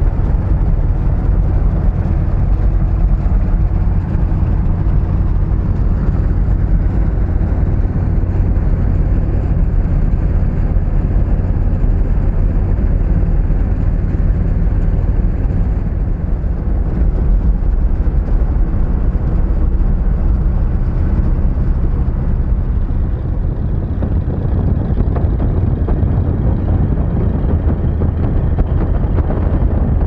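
Steady in-cab drone of a 1977 Jeep Cherokee at highway speed: low engine rumble and road noise with no break.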